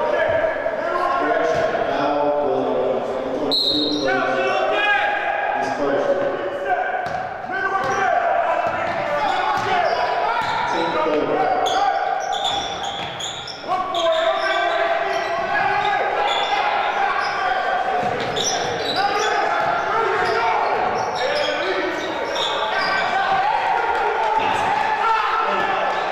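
A basketball bouncing on a hardwood gym floor during play, under a steady mix of players' and onlookers' voices echoing in the hall.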